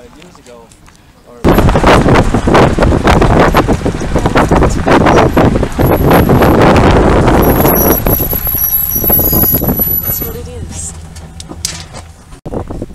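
Loud wind and road noise from riding in a vehicle over a dirt road, buffeting the microphone. It starts suddenly about a second and a half in and eases off near the end.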